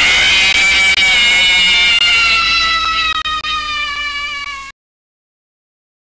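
A loud, harsh scare sound effect: a buzzing tone with many overtones that slowly falls in pitch for about four and a half seconds, then cuts off suddenly.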